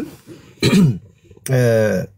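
A person clears their throat once, a short rasping burst, and then talking resumes about a second and a half in.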